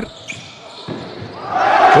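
Handball bouncing on a sports-hall floor, with the hall's reverberant background; a voice begins to rise near the end.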